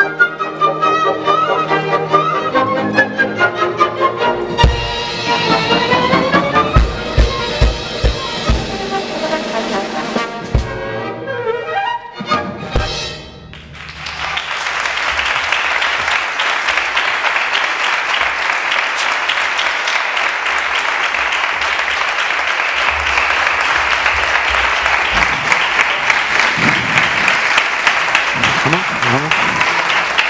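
A small orchestra of bowed strings and brass plays the closing bars of a piece, with heavy low accents in the last few seconds before it stops about 13 seconds in. After a moment's hush, the audience applauds steadily for the rest.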